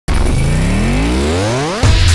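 Synthesized rising sweep: one pitched tone gliding upward, faster and faster, for almost two seconds. Near the end it breaks into a deep bass hit as electronic intro music begins.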